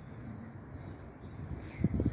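Faint, steady low rumble of distant street traffic.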